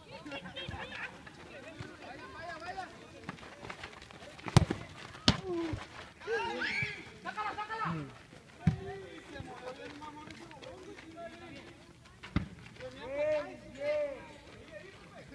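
Players shouting across a small outdoor football pitch, with four sharp thuds of the ball being kicked, the loudest about four and a half seconds in.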